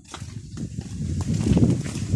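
Low rumbling handling noise from a hand-held phone carried at walking pace, building up in uneven surges over the second half.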